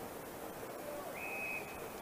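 Quiet open-air crowd and ground ambience from a football broadcast. About a second in, one short, steady, high umpire's whistle sounds for under a second, as players go to ground in a tackle.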